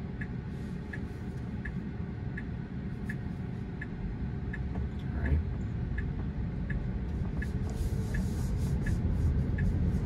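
Tesla Model 3 turn signal ticking steadily, about one and a half ticks a second, over the low hum of the cabin and road. The road noise grows louder in the second half as the car moves off.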